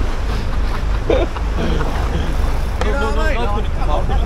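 Steady low rumble of a fishing boat's engine with wind on the microphone, under men's voices: a short shout about a second in and talking near the end.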